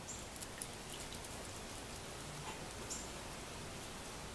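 A few faint, sharp ticks of a small dog's claws on a concrete patio, under a steady background hiss. The ticks cluster in the first second, with another near three seconds.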